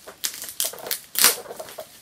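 Plastic packaging crinkling and crackling as it is handled and pulled open, in irregular bursts with the loudest crackle about a second in.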